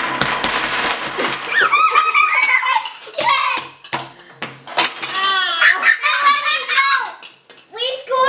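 A brief rush of noise and clatter as a tower of toy building blocks is knocked over by the game's boomer, then children shouting and giggling.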